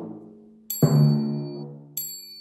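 Timpani struck with felt mallets and stopped by hand (muting): a low note on the drum tuned to A rings and is cut off just after the start, then a higher note on the drum tuned to D is struck about a second in and damped short near the end. A short high chime sounds just before the second stroke and again at the very end.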